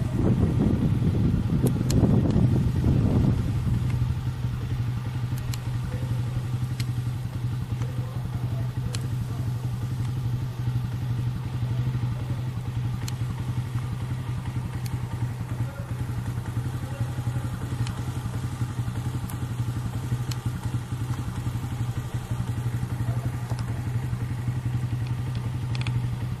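A vehicle engine running steadily with a low hum, louder for the first few seconds, with a few faint clicks now and then.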